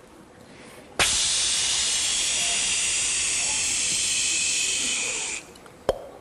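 A steady steam-like hiss that starts abruptly about a second in and runs about four seconds before fading, standing for a dry cleaner's steam iron; a single sharp click follows near the end.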